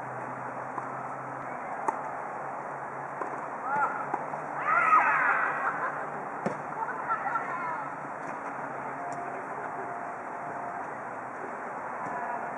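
Futsal players shouting to each other during play, loudest about five seconds in and again around seven seconds. A few sharp knocks of the ball being kicked come near two seconds and six and a half seconds. Steady background noise runs underneath.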